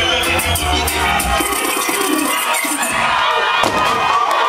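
Live reggae band playing with a heavy bass line, which stops about a second and a half in; a crowd cheers and shouts after it.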